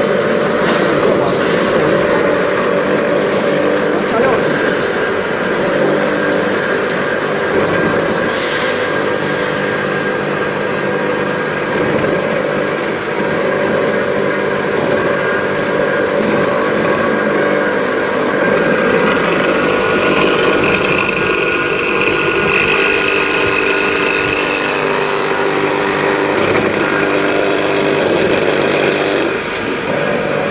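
Stainless-steel colloid mill running steadily, its motor and grinding rotor milling peanuts fed from the hopper into paste. A higher whine rises over it for a few seconds in the second half.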